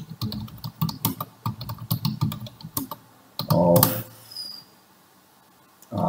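Rapid typing on a computer keyboard, a quick run of key clicks for about three seconds, then a brief louder sound about three and a half seconds in. Near the end there is a short quiet stretch.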